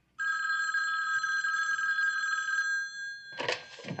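Landline telephone bell ringing once, a steady ring lasting about two and a half seconds before it stops.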